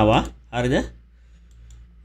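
A man speaks a short word, then a couple of faint computer mouse clicks come in the second half.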